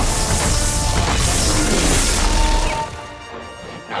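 Loud, dense crackling-energy sound effect for red speed-force lightning, over the dramatic score. It cuts off abruptly about three seconds in, leaving the music alone and much quieter.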